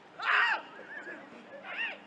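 Two high-pitched shouts from footballers at play, a loud one about a quarter second in and a shorter one near the end, each rising and falling in pitch.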